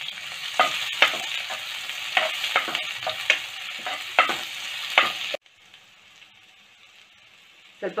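Chopped onions sizzling in hot oil in a granite-coated pan while a steel spoon stirs them, the spoon clicking and scraping against the pan about twice a second. The sizzle cuts off suddenly about five seconds in, leaving only a faint hiss.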